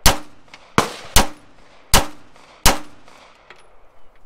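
Five pistol shots fired in a quick, uneven string over about three seconds, each a sharp crack followed by a short ringing echo.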